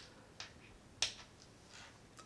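Two short, faint clicks about half a second apart, the second one sharper, over low room tone.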